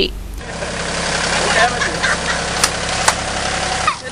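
Roadside ambience: a vehicle engine running steadily with traffic noise, faint voices in the background and two sharp clicks about two and a half and three seconds in.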